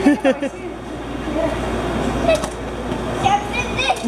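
A woman laughs briefly at the start. Then a steady rush of water churning in a stingray touch tank runs on, with a few short bursts of children's voices over it.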